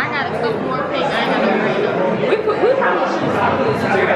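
Crowd chatter: many people talking at once in a large indoor room.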